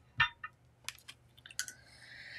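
Paintbrushes being handled and set down on the table: a sharp click with a soft thump just after the start, then a few lighter clicks and taps, and a breath near the end.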